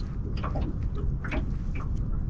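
Wind rumbling on the microphone on a small boat at sea, with four or five light clicks and taps scattered through it.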